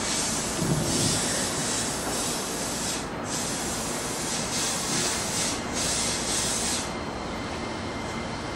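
Red Keikyu electric train pulling away from the station with a steady rumble from its running, and repeated patches of hissing, each a second or two long, that start about a second in.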